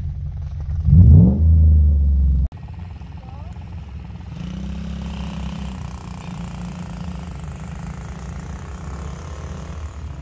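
A pickup engine revs hard, with a rising pitch about a second in, and is cut off abruptly. Then a Ford F-150 pickup's engine runs steadily at low speed as the truck comes down a dirt track.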